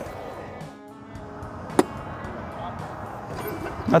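A single sharp crack of a golf club striking the ball, an iron shot, a little under two seconds in, over steady background music.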